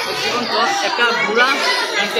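Chatter of several people talking over one another, with no single voice standing out.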